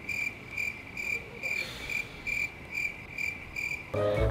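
Cricket chirping sound effect, an even string of about three high chirps a second: the comic "crickets" cue for an awkward silence.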